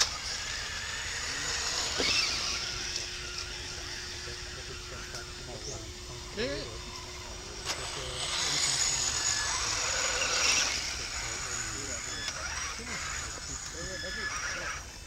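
Radio-controlled scale crawler trucks driving along a muddy trail, their electric motors and gears whining faintly, with a steady hum for a few seconds and a louder stretch in the second half. A person calls out "eh, eh, eh" briefly about halfway through.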